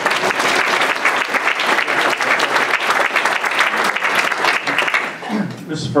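Audience applauding, many hands clapping in a dense patter that dies away near the end.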